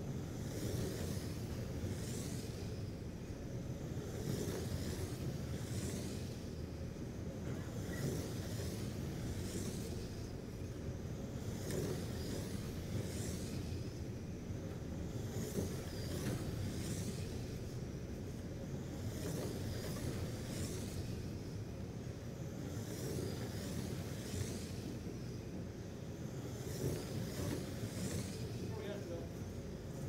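Radio-controlled Slash race trucks lapping an oval. Their high motor whines rise and fall each time the pack passes, every second or two, over a steady low hum.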